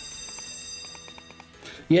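Sugar Rush 1000 video slot's game sounds: bright, sustained chiming tones as three scatter symbols sit on the reels, fading away over the first second and a half, with a few short stepped notes in the middle.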